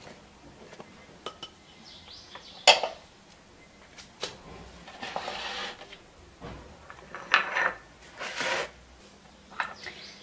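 Small glass bowls knocking against a plastic mixing bowl and the counter as semolina and flour are tipped in: several sharp knocks, the loudest about three seconds in, with short rushes of pouring flour between them.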